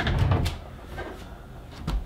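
Wooden cabinet door being handled while its hardware is fitted: a low bump and rustle at the start, a click about half a second in, then quieter handling and a short knock near the end.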